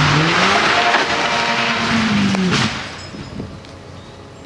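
Rally car's engine running hard at speed, its note rising then holding, with a loud hiss of tyres on the wet, gravel-strewn road. About two and a half seconds in the engine note falls and the sound drops away as the car leaves the road and runs off into the verge.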